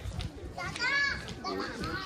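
A high-pitched voice calls out briefly about a second in, over low background street noise.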